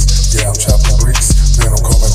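Hip hop track made on BandLab: a beat with deep bass notes and a drum hit about every two-thirds of a second.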